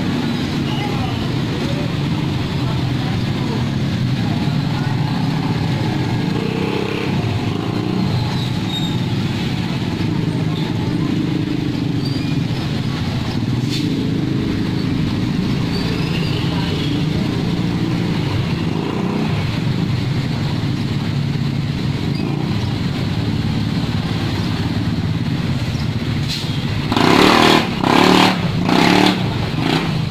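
Road traffic: motorcycle and car engines running as they pass, over a steady traffic hum. Near the end come four short loud bursts, close together.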